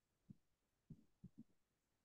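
Near silence with four faint, short, low taps from a stylus dabbing on a digital writing surface as dashed lines are drawn.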